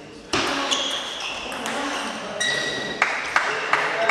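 Table tennis rally: the ball clicks sharply off the bats and table several times, closely spaced near the end, mixed with short high-pitched squeaks in the hall.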